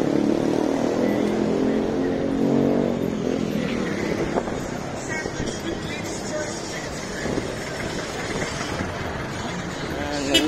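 A motor vehicle's engine running close by, loudest in the first three seconds and then fading into a steady street hum with faint voices.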